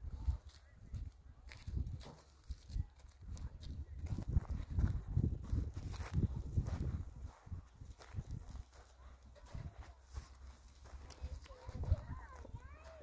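Irregular footsteps crunching over dry, stony ground as someone walks, over a constant low rumble on the microphone.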